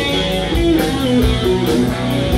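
Live rock band playing: electric guitars and bass guitar over drums, with held guitar notes that shift in pitch and a steady drum beat.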